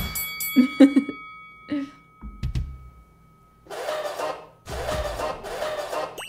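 Edited variety-show sound effects: a chiming ding with several ringing tones that fade over about two seconds, then, after a near-quiet moment, two short noisy bursts of music.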